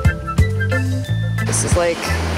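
Background music with a steady beat and bass line. A rushing noise joins it about one and a half seconds in.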